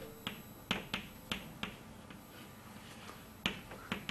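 About six short, sharp clicks at uneven intervals, most in the first two seconds and one more near the end, against a quiet room.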